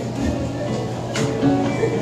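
Acoustic guitar strummed in a live solo folk song, carrying on between sung lines.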